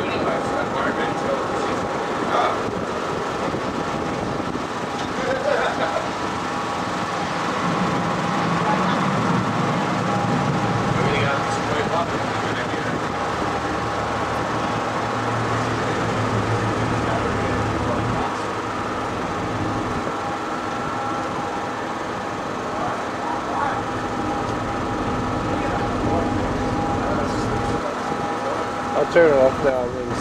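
A river cruise boat's engine running steadily, heard inside the cabin as a constant drone with held tones, and a deeper rumble for a stretch in the middle. Indistinct voices of passengers come and go over it.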